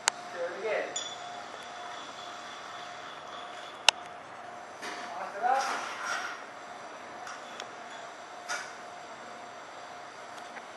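Glassware clinking during cocktail making: a loud, ringing glass ping about four seconds in and a few lighter knocks, with faint voices in the background.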